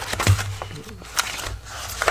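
A paperback music book being handled and opened: a few short paper rustles and taps as the cover and pages are turned.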